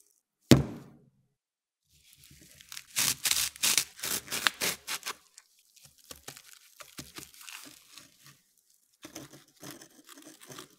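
A single sharp thump, then a run of loud tearing and crinkling as the plastic packing tube is torn open, followed by quieter scraping and rustling as the packing sand slides out of the tube onto the table.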